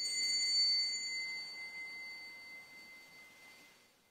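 Small altar bell rung at the elevation of the chalice, its bright, high ringing dying away over about four seconds.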